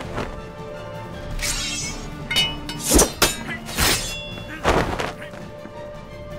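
Film score music with a series of sharp hit sound effects from a sword-and-martial-arts fight: about six blows between one and five seconds in, the loudest about three seconds in.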